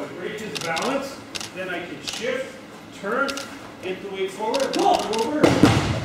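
Voices talking in a large hall, with a few light knocks, then near the end a loud thud as a thrown aikido partner's body lands on the tatami mats.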